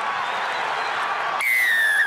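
Stadium crowd cheering. About one and a half seconds in, a rugby referee's whistle gives one long, loud blast, signalling the try.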